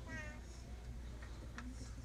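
Quiet concert-hall room noise with a low steady hum before an orchestra starts to play. A brief high, wavering vocal-like cry comes at the very start, followed by a few faint clicks.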